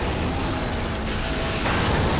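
Loud mechanical racing-car sound effects mixed with music, with an abrupt change in the sound about one and a half seconds in.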